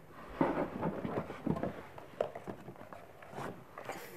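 Small cardboard cube boxes being taken out of a larger cardboard box and handed over: a run of light cardboard knocks and scrapes in the first couple of seconds, then a few single taps.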